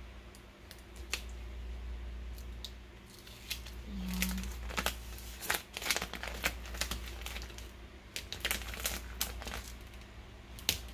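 Adhesive vinyl being peeled off its backing sheet by hand and crumpling as the excess is weeded from a cut design, a run of crackles and crinkles. The crackling is sparse at first and comes thick from about three and a half seconds in.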